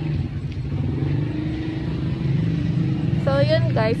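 Engine of a motorcycle-and-sidecar tricycle running at a steady speed, heard from aboard as a constant low hum. A woman starts talking near the end.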